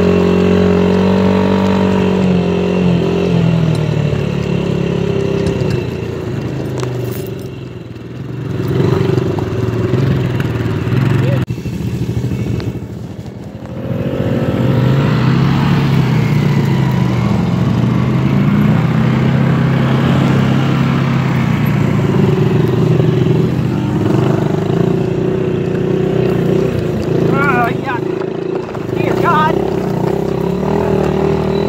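Small dirt bike engine running under the rider, its pitch rising and falling as the throttle opens and closes. It drops away briefly twice, about eight and thirteen seconds in, then picks up again.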